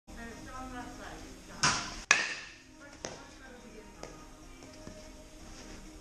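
A bat strikes a pitched baseball once with a sharp crack about two seconds in, just after a short noisy burst, with a few faint knocks afterwards. Background music plays throughout.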